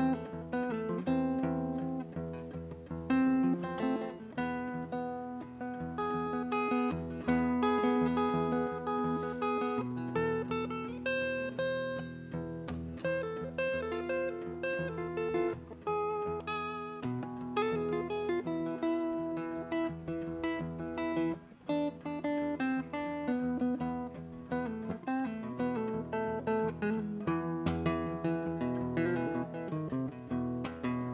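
Solo acoustic guitar playing a picked instrumental introduction: a continuous run of ringing single notes and chords over a steady low bass note, with no voice.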